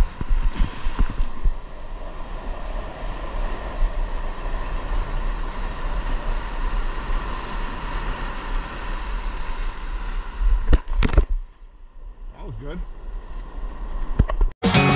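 Rushing, splashing whitewater against a foam surfboard riding a broken wave, with wind on the microphone. A few sharp knocks come about eleven seconds in, after which the sound is quieter and duller.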